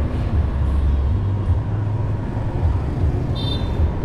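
Steady low rumble of a motorbike riding along a street: engine running with wind on the microphone. A short high-pitched tone sounds near the end.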